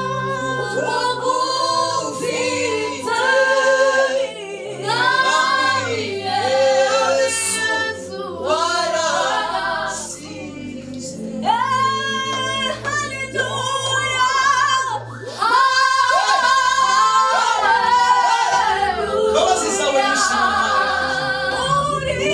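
A small vocal group of women's voices and a man's voice singing a gospel song together in harmony into handheld microphones.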